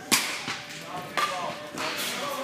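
Two sharp cracks, the first just after the start and the loudest, the second about a second later, over faint voices in the background.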